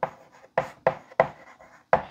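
Chalk writing on a blackboard: six short, sharp chalk strokes and taps in quick succession as a word is written.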